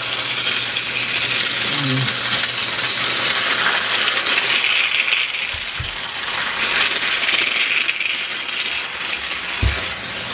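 Battery-powered TrackMaster toy train engine (Whiff) running, its small electric motor and plastic gears making a steady rattling buzz, with two dull thumps, one about halfway and one near the end.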